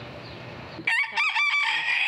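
Bantam (garnizé) rooster crowing close up, starting about a second in: a few short broken notes, then one long, high held note.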